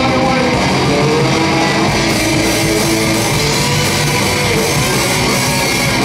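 Live rock band playing loud: electric guitars, bass guitar and a drum kit going at full tilt.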